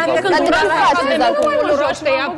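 Overlapping speech: several people talking at once in a heated argument.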